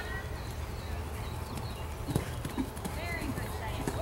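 A horse's hoofbeats on soft arena dirt as it moves past at a canter, with the heaviest strike about two seconds in.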